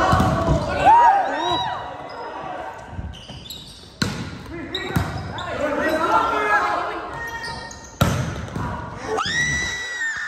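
Volleyball rally on a gym court: sharp ball hits at intervals, three of them a second or more apart in the second half, with sneaker squeaks on the hardwood and players calling out. Near the end a loud, rising shout or scream.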